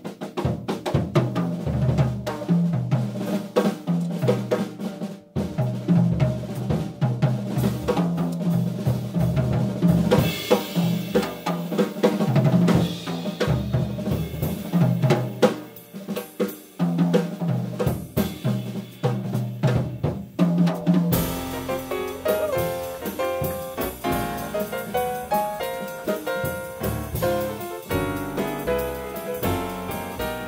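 Jazz drum solo on an acoustic drum kit: snare, bass drum and pitched toms, with a swelling cymbal wash about ten seconds in. About two-thirds of the way through, piano and upright bass come back in and the trio plays on with the drums behind them.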